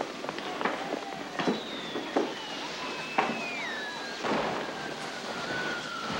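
A few sharp knocks, each about a second or so apart, over a faint murmur. A thin high tone slides slowly downward through the second half.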